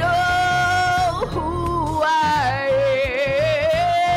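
A woman singing a gospel song solo into a microphone over instrumental accompaniment. She holds long notes with vibrato and slides up to a new note about a second in.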